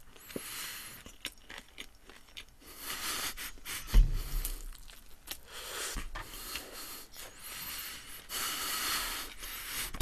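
A mouthful of toast with hash brown being chewed, with many small crunches and mouth clicks. A dull thump comes about four seconds in.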